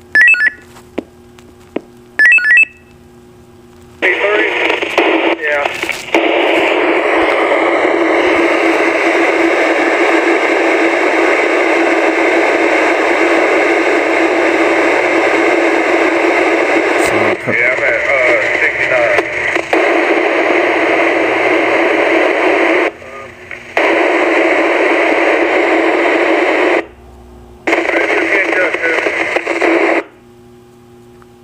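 Receiver audio from a Maxon SM-4150 VHF FM mobile radio on MURS channel 4: a loud, narrow-band rush of static with faint, unintelligible voice in it, cutting out briefly twice. Two short beeps come near the start.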